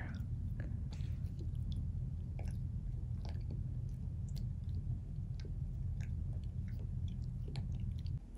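A dog gnawing a hard teal chew bone: scattered faint clicks and scrapes of teeth on the toy, over a steady low hum.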